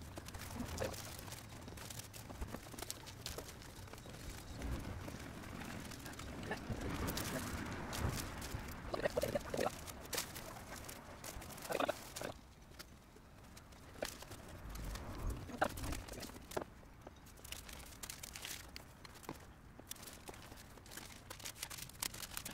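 Irregular knocks, taps and rustling from hands working inside a bare van: a plywood wall panel and foil insulation being handled and fitted against the metal body.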